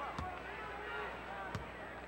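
Basketball bounced twice on the court by the free-throw shooter, a little over a second apart, over the murmur of an arena crowd.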